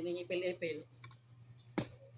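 A short bit of speech, then a single sharp click near the end.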